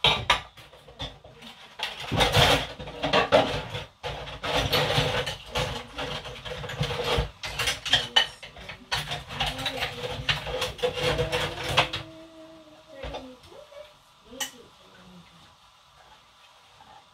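Dishes being washed by hand at a kitchen sink: plates and bowls clinking and clattering against each other, busy for about twelve seconds, then only an occasional clink.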